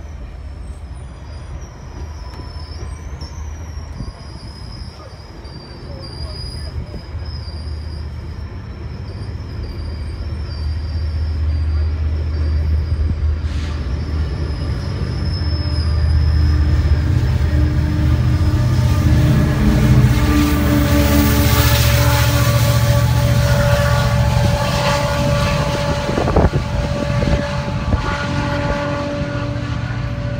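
GO Transit diesel-hauled bilevel commuter train pulling out: low rumble of the engine and wheels on the rails, growing louder through the middle and easing slightly near the end. A thin, high, wavering squeal runs over the first half.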